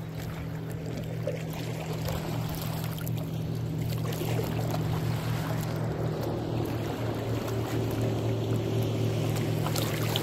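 A boat engine running steadily with a low hum, under a haze of water and wind noise. It grows slightly louder about four seconds in.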